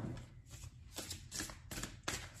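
Tarot cards being handled: a handful of faint, irregular rustles and clicks of card stock.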